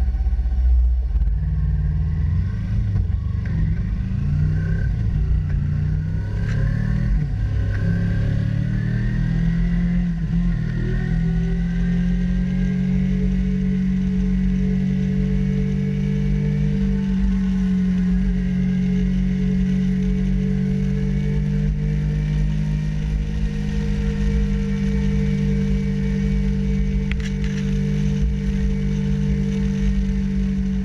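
Kawasaki Ninja 300's parallel-twin engine pulling away and shifting up through the gears, its pitch climbing in several steps over the first ten seconds, then holding nearly steady at cruising speed. Heavy wind rumble on the microphone runs underneath.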